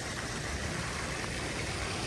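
Steady outdoor background noise, an even hiss over a low rumble, with no distinct events.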